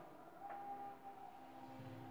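Faint chalk stroke on a blackboard as a long curve is drawn, a soft scraping with a small tick about half a second in, over a faint steady hum.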